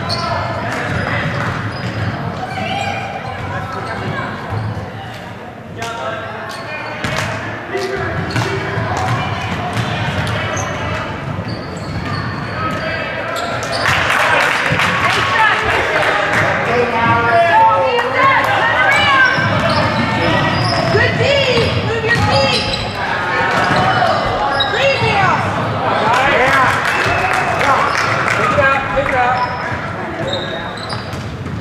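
Basketball bouncing on a hardwood gym floor amid indistinct shouting voices, all echoing in a large gym. The voices grow louder about halfway through.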